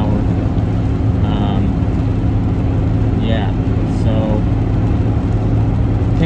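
Steady road and engine noise inside a pickup truck's cab while driving on a rain-wet road, with a constant low drone under an even hiss.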